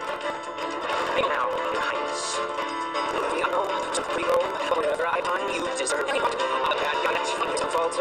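A dramatic show-tune song playing: a young male voice singing over busy orchestral backing.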